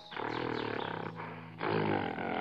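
Two rough animal roars from a sound-effect track, the second one louder, over soft background music.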